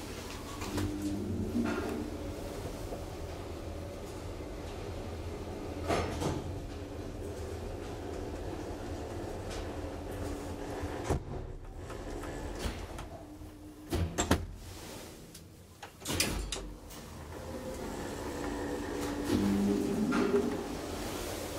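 A 1964 KONE traction elevator car travelling between floors: a steady low hum of the moving car, broken by several sharp clicks and knocks, the loudest a little past the middle.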